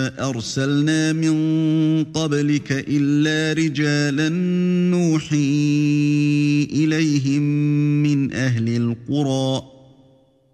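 A man chanting Quran recitation in Arabic, in the drawn-out melodic tajwid style: long held notes slide from pitch to pitch, with short breaks for breath. The chanting stops near the end.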